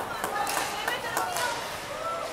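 Ice hockey game sounds at rinkside: skates on the ice and a few sharp clacks of sticks and puck over a steady hiss, with faint voices calling in the background.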